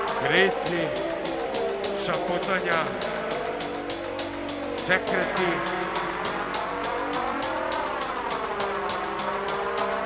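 Live industrial electronic music: long tones sweeping up and down over a sustained drone and a steady fast ticking beat, with a few short voice-like cries, one near the start, one around two and a half seconds and one around five seconds.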